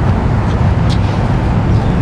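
Steady low rumble of outdoor background noise during a pause in speech, with a couple of faint clicks.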